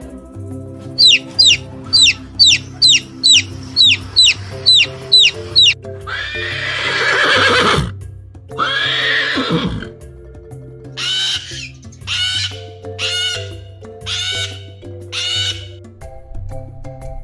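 A chick peeping in quick high falling chirps, about two a second. A horse then whinnies twice in long loud calls, followed by five short, harsh calls, all over soft background music with a steady bass pattern.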